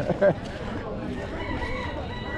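A rooster crowing: one long drawn-out call, beginning about a second in, that rises a little and then falls away at the end.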